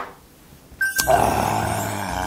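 A man's drawn-out throaty exhale, like a "kya" after downing a shot of soju. It starts about a second in and is preceded by a sharp click at the very start.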